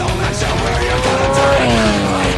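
Honda CBR900 sport bike revving hard with its tyre squealing, a pitched sound that climbs for about a second and a half and then drops, heard over loud rock music.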